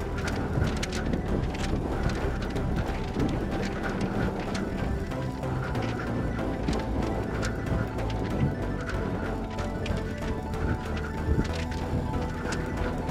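Background music over a runner's footfalls on a paved path, landing in a steady running rhythm.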